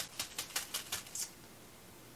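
Small craft sprinkles rattling inside a plastic zip bag as it is shaken by hand: a quick run of sharp clicks, about six a second, which stops after a little over a second.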